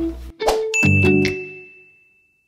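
A short laugh, then a bright chime-like ding from an animated outro sound effect, struck about half a second in and ringing out as it fades over the next second and a half.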